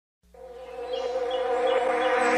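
Background music fading in: a sustained, buzzy chord that swells in loudness, with a light high note repeating a few times a second.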